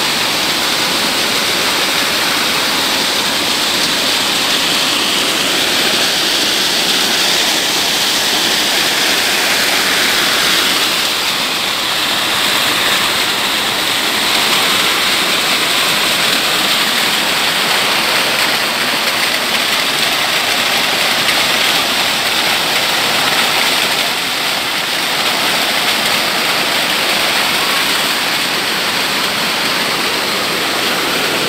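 Small stream tumbling fast down a steep rocky channel: a steady rush of white water.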